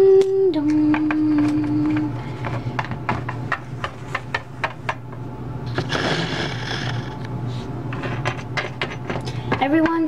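A voice imitating a two-note bell, 'ding-dong', with the lower 'dong' held steady for about a second and a half at the start. Then comes a run of scattered clicks and light knocks from small plastic toy figures and props being handled on a tabletop, with a brief rustle about six seconds in as the camera is moved.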